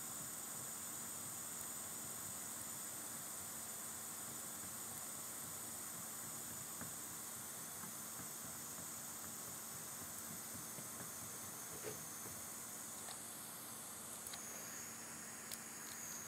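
Faint, steady hiss of workshop background noise with a low hum, broken only by a few soft clicks near the end.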